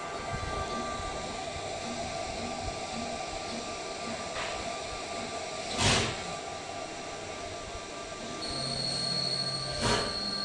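UV flatbed printer running: a steady whir from its cooling fans and print mechanism, with several constant tones. A sharp knock about six seconds in, and a high steady tone comes in near the end.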